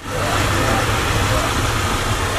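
A motor vehicle's engine running steadily, an even low rumble under a broad hiss.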